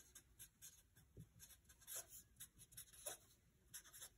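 Faint strokes of a Sharpie felt-tip marker writing on paper: a string of short, soft scratches as the letters are drawn.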